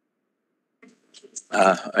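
Near silence, then a few faint clicks and, about a second and a half in, a man's voice starting to speak with a drawn-out throaty 'uh' into a desk microphone.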